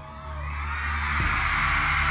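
Crowd of fans cheering and screaming, fading in and growing louder over the first second, then holding steady.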